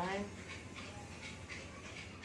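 A man breathing hard in short, quick huffs, straining through a forearm exercise. The end of a spoken count rises in pitch at the very start. A steady low hum runs underneath.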